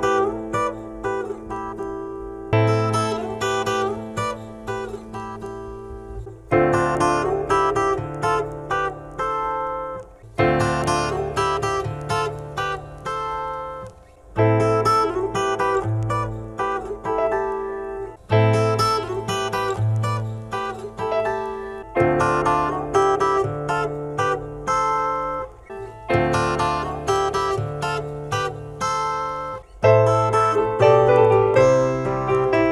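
A guitar music track played through Beyerdynamic DT 770 Pro 80-ohm closed-back headphones and picked up by a microphone pressed hard against the earcup, with low bass notes under plucked guitar in phrases that start again about every four seconds. It is a demonstration of how these headphones reproduce sound, which the owner calls unnatural and says distorts on bass.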